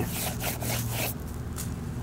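Rubbing and scraping as a rubber-soled shoe is handled and turned over in the hand, strongest in the first second and then fading, over a steady low hum.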